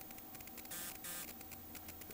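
Faint electrical hum with a hiss that comes and goes a few times, from bench electronics.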